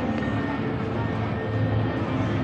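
Downtown street ambience: a steady low hum with music from nearby bars mixed in.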